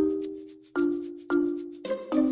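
Background music: a light tune of struck, pitched notes, a new chord about every half second, each fading away, over a quick high ticking rhythm.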